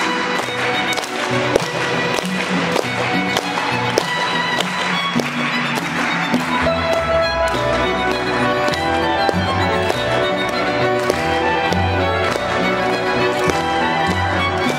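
Instrumental folk music from violin, button accordion and cello, playing a lively tune, with hands clapping along in time. A low bass line comes in about halfway.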